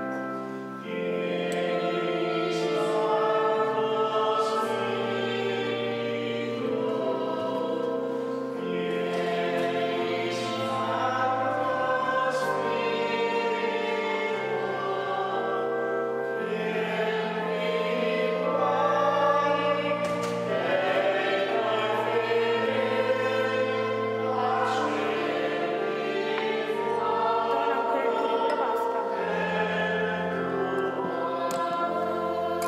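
A choir singing a slow sacred hymn in long, held chords that change every couple of seconds.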